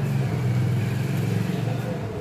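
A motor vehicle engine running with a low, steady rumble that eases near the end, with indistinct voices.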